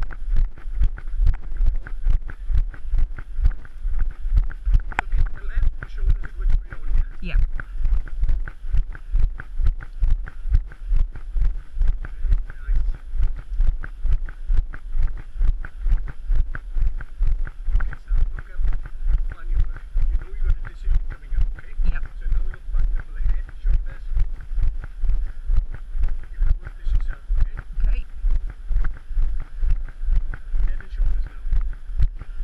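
A person's walking footsteps on paving, heard as regular heavy thumps about two a second as each step jolts a body-worn camera.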